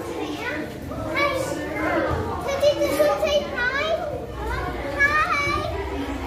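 Several children talking and calling out over one another, their voices high-pitched and overlapping.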